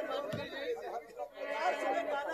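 Several voices talking at once through the stage sound system, with a low thump just after the start.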